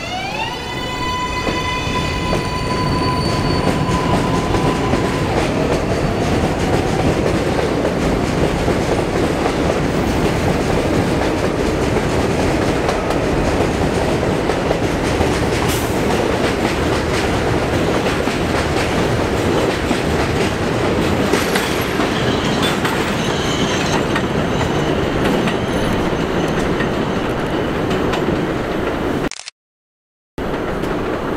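New York City Subway 7 train pulling out of a station: the propulsion motors' whine rises in pitch and holds a steady tone for about five seconds. Then the cars rumble and clatter past over the rails, loud and even, until the sound cuts off suddenly near the end.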